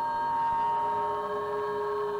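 Soundtrack music of sustained, overlapping held tones, with one high note fading and a lower note swelling in near the end.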